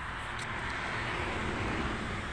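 Steady rush of a passing vehicle on the road, growing slowly louder.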